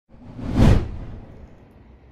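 Logo-intro whoosh sound effect with a deep low rumble, swelling to a peak just over half a second in and fading away over the next second.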